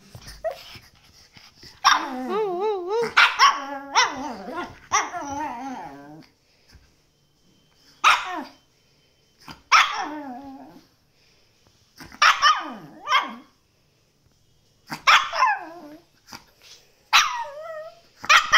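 Chihuahua barking: a run of barks with wavering pitch over a few seconds, then short single barks with pauses of a second or two between them.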